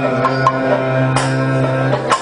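Kathakali accompaniment music: a long held sung note over drum beats and sharp metallic strikes, the strongest a little over a second in.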